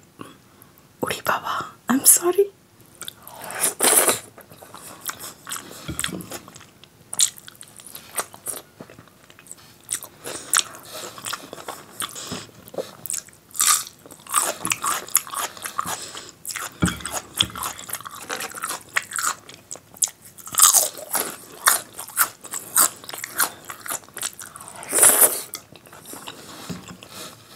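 Close-miked eating sounds of rice and dal eaten by hand: wet chewing and lip smacking, with irregular crunches and bites.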